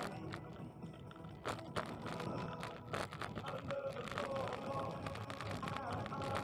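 Bicycle riding over a paved path: irregular clicks, knocks and rattles from the bike and its camera mount over a low rolling hum, with faint wavering tones in the background that grow a little stronger in the second half.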